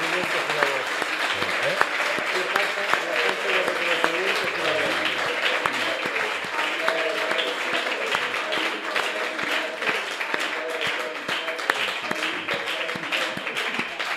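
Audience applauding steadily, many hands clapping, with voices talking over the clapping.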